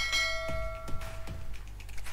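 Notification-bell sound effect: one bright bell ding that starts at once and rings out over about a second and a half, over faint regular ticks.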